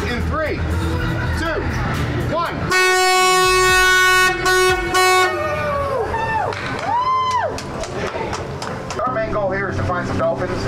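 Tour boat's horn blowing at one steady pitch: one long blast of about a second and a half, then two short ones. Voices of passengers on deck can be heard around it, with shouts just after.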